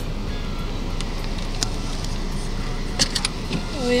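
Car interior noise while driving slowly: a steady low engine and road rumble, with a few faint clicks, and a voice starting near the end.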